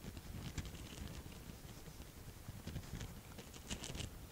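Soft, irregular patting of a damp makeup sponge (Beauty Blender) dabbing concealer onto the skin under the eye, faint over a low room hum.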